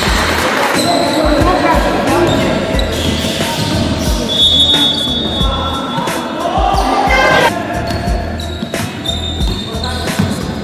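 Basketball game sounds on an indoor hardwood court: a ball dribbled and bouncing in irregular thumps, sneakers squeaking briefly, and players' voices calling out in a reverberant hall.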